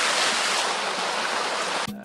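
Small rock waterfall splashing into a pond: a steady rushing of water, which cuts off abruptly near the end.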